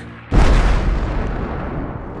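A huge mid-air explosion of a B-24 Liberator bomber: a steady aircraft engine drone is cut off about a third of a second in by a sudden deep boom that dies away in a long rumble.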